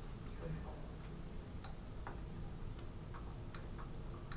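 Laptop keyboard typing: scattered, irregular key clicks over a steady low room hum.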